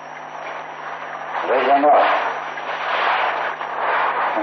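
Old recording of a man preaching a Buddhist sermon in Burmese: a short spoken phrase about one and a half seconds in, over a steady hiss and a faint high whine.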